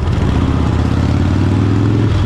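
Motorcycle engine running under way, its note climbing slightly as the bike accelerates.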